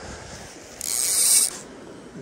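Fly reel's clicker ratcheting in one quick run of under a second, about a second in, as fly line is pulled off the reel.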